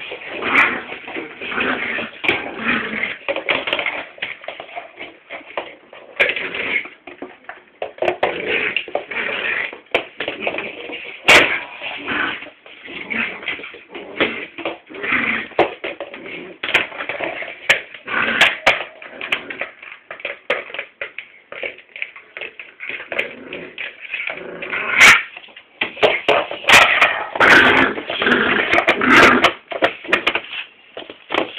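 Staffordshire bull terrier puppy whimpering and making play noises, broken up by a few sharp knocks.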